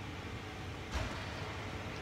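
Steady background noise of a large indoor room, with one short knock about a second in.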